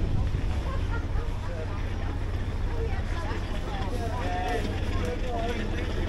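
People talking in the background over a steady low rumble.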